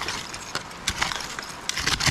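A hand digging tool jabbing and scraping into loose soil full of broken glass and stoneware. It makes a quick run of short crunching clicks and scrapes.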